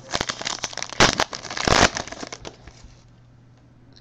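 Crinkling of a foil trading-card pack wrapper as a pack of baseball cards is opened and handled, with small clicks and two louder crinkly bursts, about a second in and just before two seconds.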